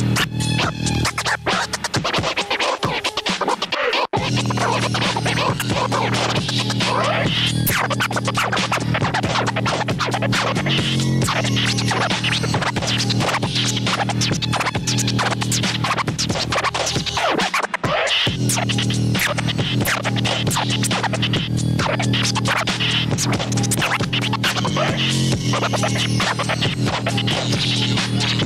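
Vinyl record scratching on a portable scratch turntable over a backing beat: the record is pushed back and forth under the needle in fast strokes, chopped by quick fader cuts. The beat's bass drops out for a couple of seconds early on and again briefly about two-thirds of the way through while the scratching carries on.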